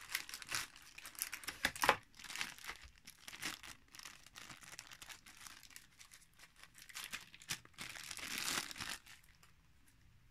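Cardboard packaging and a clear plastic bag being handled and crinkled as a cable is unwrapped: irregular rustles and crackles, with a longer crinkle near the end before it goes quiet.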